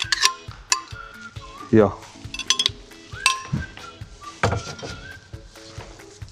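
Blender jar and kitchen utensils clinking and knocking, with about half a dozen sharp clicks and clacks spread through, over soft background music.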